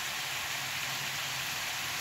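Pot of salted water boiling with pieces of asparagus stalk in it, giving a steady, even hiss.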